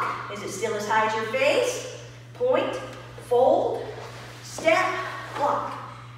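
A woman's voice calling short drill commands, about one a second, over a steady low hum.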